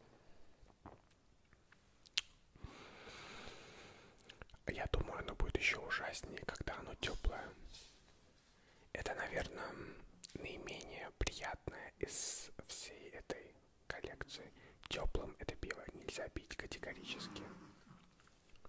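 Close-miked whispering in several phrases with short pauses, starting a couple of seconds in and mixed with small sharp clicks.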